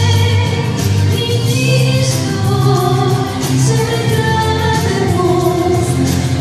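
Woman singing a song into a handheld microphone, holding long notes over an instrumental accompaniment with a steady bass.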